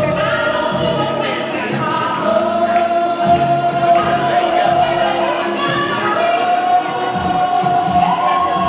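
Gospel music: a choir singing long, held notes that step up in pitch a few times.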